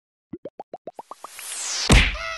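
Channel logo intro sting: a quick run of about eight bubble-like plops, each rising in pitch and each higher than the last, then a whoosh that swells up to a loud hit near the end.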